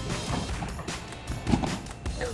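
Soft background music with the thuds of bare feet bouncing on a trampoline mat. The loudest thud comes about one and a half seconds in.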